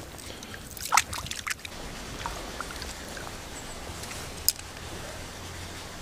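River water moving steadily, with a couple of short splashes about a second in and a single sharp click about four and a half seconds in.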